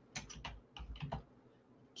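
Faint computer keyboard typing: a quick run of about a dozen keystrokes that stops a little after a second in.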